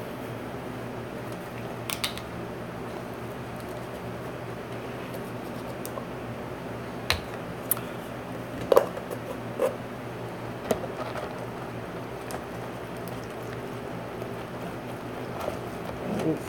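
Steady low room hum with a few scattered light clicks and taps from handling a plastic cereal container and spoon.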